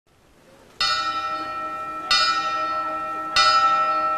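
A wrestling ring bell, a round metal gong-type bell, struck three times about a second and a quarter apart. Each strike rings on with steady tones until the next.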